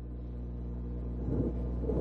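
Steady low hum of a lecture hall's room tone, picked up through the presenter's microphone and sound system, with a faint brief sound about one and a half seconds in.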